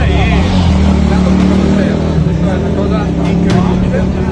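A motorcycle engine running steadily, its pitch wavering a little, with people talking over it.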